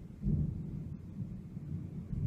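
Irregular low rumbling noise on the phone's microphone, loudest about a quarter second in, the kind made by air or handling close to the mic.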